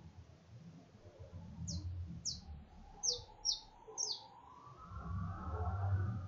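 A small bird chirping: five short, high chirps, each falling in pitch, in the first two thirds. A low rumble swells near the end.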